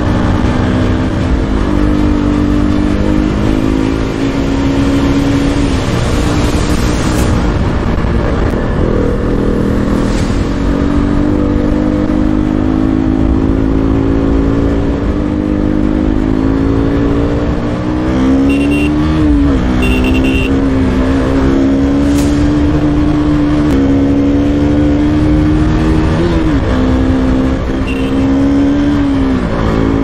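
KTM RC 200's single-cylinder engine pulling the motorcycle along at a fairly steady note. The pitch steps down a few times and, a little after the middle and twice near the end, rises as the bike accelerates and then drops as it shifts up. A low rumble of wind noise runs under the engine.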